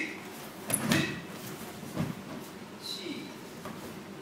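Karate kata movements: bare feet stamping on a wooden floor and cotton gi sleeves snapping with the strikes, a series of sharp sudden sounds about one a second, fading out after about three seconds.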